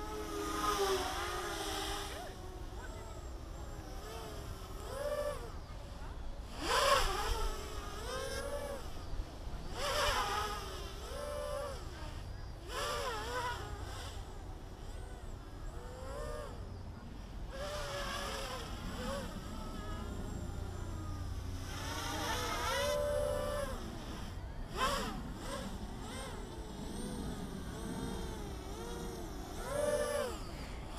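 Small quadcopter's electric motors and propellers whining in the air, the pitch rising and falling in repeated throttle surges every couple of seconds as it is flipped and recovered.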